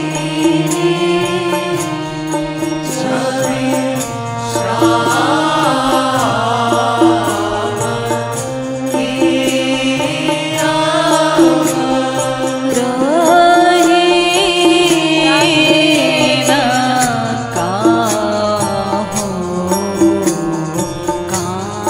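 Kirtan: voices singing a Hindi devotional bhajan over steady held drone notes, with dholak and tabla hand drums keeping the rhythm.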